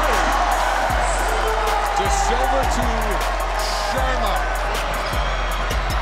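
Basketball arena ambience during play: a loud crowd with music running through it and a low thump about once a second.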